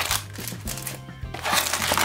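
Background music with a steady beat, under the crinkle of foil card packs being pulled out of a cardboard box.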